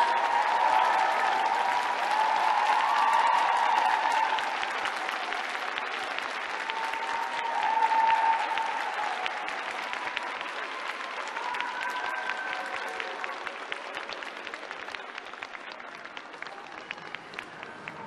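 Arena audience applauding, with shouting voices over it in the first few seconds and again about eight seconds in; the applause slowly dies down.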